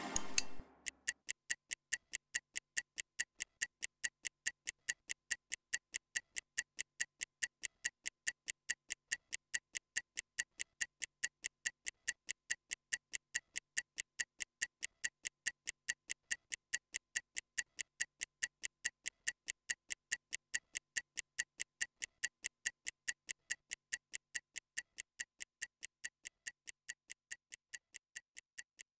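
Stopwatch ticking sound effect: a steady run of sharp clicks, about four a second, timing a rest interval. The clicks grow slightly fainter over the last few seconds.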